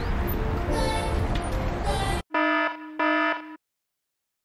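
Steady road and wind noise on a helmet camera while cycling, cut off abruptly about halfway through, followed by two short, loud electronic buzzer tones about 0.7 s apart, an edited-in sound effect, then silence.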